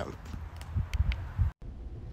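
Small single-cylinder kart engine running on a richer main jet, heard as an uneven low thumping with a few sharp pops. It cuts off abruptly about one and a half seconds in.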